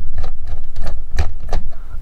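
A small Phillips screwdriver backing a screw out of the plastic base of a first-generation Snow AirPort Extreme base station, giving irregular light clicks and ticks, a few each second, over low handling bumps.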